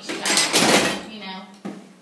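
Indistinct talking, with a loud burst of hissing noise lasting just under a second near the start and a single click near the end.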